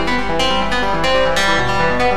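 A Reaktor 5 software instrument plays a quick repeating melody from the FL Studio piano roll, about four notes a second. The note velocities are set so that certain notes stand out louder than the others.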